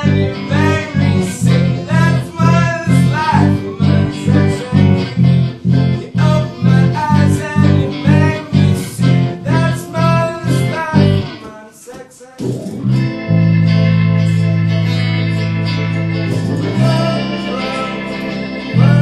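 Live band playing a guitar-driven song with a steady pulsing beat of about two strokes a second; about 12 seconds in it drops away briefly and comes back on long held chords.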